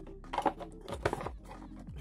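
Cardboard knife box being handled, its box and lid knocking and scraping a few times around half a second and one second in, over faint background music.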